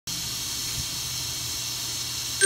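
Steady hiss with a low electrical hum from a switched-on PA system, before any music plays.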